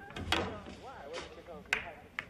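Pool cue striking the cue ball with a sharp crack about a third of a second in, followed by a second sharp knock near the end.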